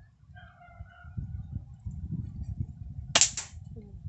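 A toy Glock 18 pellet gun fires a single shot: one sharp crack about three seconds in, with a short tail after it.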